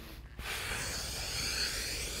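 A person's long, steady exhale, starting about half a second in, as he breathes out while sinking into a deep twisting stretch.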